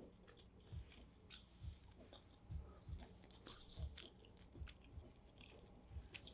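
Faint close-up chewing and crunching, with a soft low thump about every 0.8 s and small crisp clicks between them.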